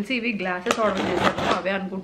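A woman talking, with a sharp click and a short rustle of something being handled near the middle.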